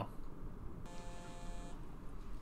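A phone ringing: one steady electronic tone lasting just under a second, starting about a second in.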